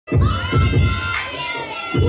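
Hip hop track with a heavy kick-drum beat and steady hi-hats, with a crowd cheering and shouting over it.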